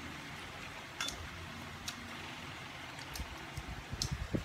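Steady room hum with a few light, sharp clicks of chopsticks against bowls and plates while people eat, about one, two and three seconds in.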